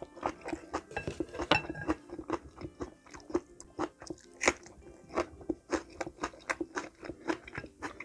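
Close-miked crunchy chewing, with sharp crunches coming two to four times a second. The loudest crunch comes about halfway through, as a raw green chili pepper is bitten into.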